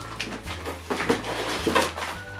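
Plastic treat packaging crinkling and rustling as it is handled, in a few irregular crackles.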